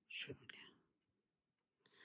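Near silence, apart from a short, soft breathy sound near the start: a person's breath or a half-whispered sound.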